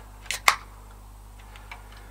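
Ring-pull beer can cracked open: two sharp clicks about half a second in, a weak crack with little fizz.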